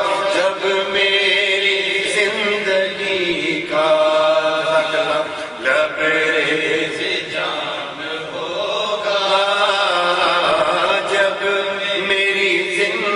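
A man's voice chanting devotional verse into a microphone, in long melodic held notes that bend slowly in pitch, with short breaks for breath.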